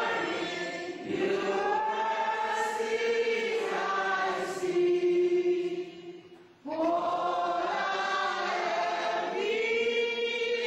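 A congregation singing together in slow, held notes, with a short break in the singing about six and a half seconds in before the next phrase starts.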